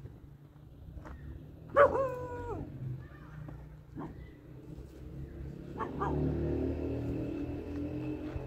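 A dog gives one drawn-out bark about two seconds in, its pitch dropping at the end. A steady droning hum comes in near the end over a low background rumble.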